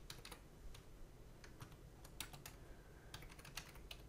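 Typing on a computer keyboard: faint, irregularly spaced key clicks.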